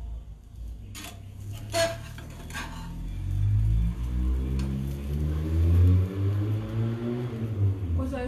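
A metal spatula knocks against an aluminium frying pan three times in the first few seconds. From about three seconds in, a low droning hum that wavers in pitch takes over and is the loudest sound.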